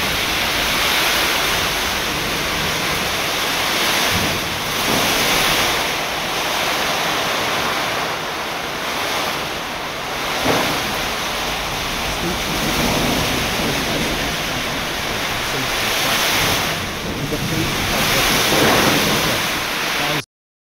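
Heavy rain and strong cyclone wind, with wind buffeting the microphone: a dense, steady rushing noise that changes in tone a few times.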